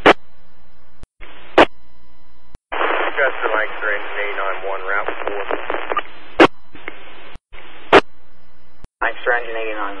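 Fire-dispatch radio traffic on a scanner: steady radio hiss broken by brief drop-outs and several sharp clicks as transmissions key up and end. A voice talks over the radio through the middle, and another starts calling a unit near the end.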